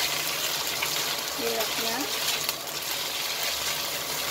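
Cilok sizzling in hot oil in a wok as a spatula stirs them, the frying steady, with a few brief scrapes of the spatula on the pan around the middle.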